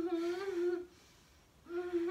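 A person's closed-mouth moans, 'mmm', as if in stomach pain. One is held at a steady pitch for nearly a second at the start, and a second begins near the end.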